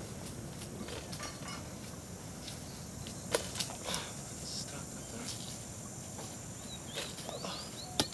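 Outdoor garden ambience: a steady low rumble, a few sharp knocks about three and a half seconds in, and short high chirps near the end.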